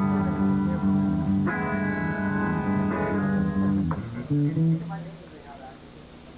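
Amplified electric guitar playing held, ringing notes that step between pitches, stopping about four seconds in, followed by a couple of short notes and then quieter room noise.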